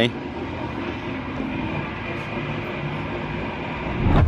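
A steady low mechanical rumble with a faint droning hum, even in level throughout.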